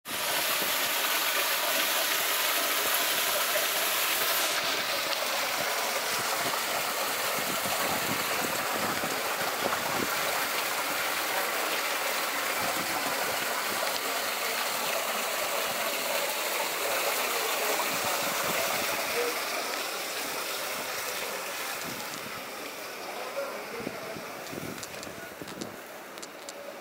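Water running steadily over a small rock waterfall, fading over the last few seconds.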